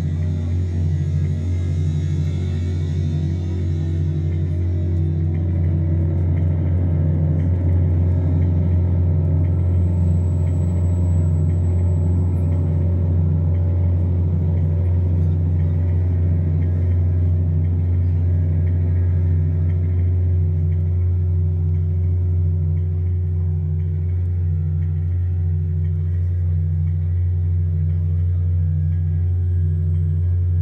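Modular synthesizer drone played live: a deep, sustained bass tone with a slightly higher note pulsing about once a second above it. A thin high tone sounds briefly about ten seconds in.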